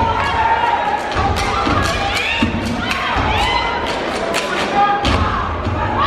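A step team stomping and clapping in unison, a run of sharp, irregularly spaced stomps and claps, with the audience cheering and shouting over them.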